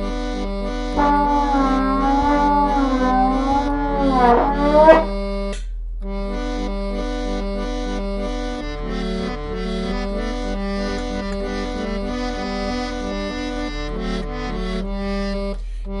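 Bontempi Hit Organ, a small electronic home organ with a reedy, accordion-like tone, playing a bouncy chord-and-bass accompaniment. Over it for the first five seconds a trombone plays wavering, sliding notes that end in an upward slide. After a short stop the organ carries on alone.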